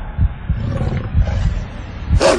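Deep, rumbling animal growl with uneven pulses: a film sound effect of a werewolf snarling.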